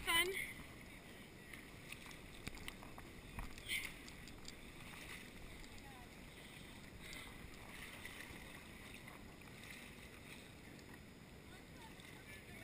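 Faint, distant chatter of a group of river rafters over the steady wash of the river, with a couple of short knocks about three and a half seconds in.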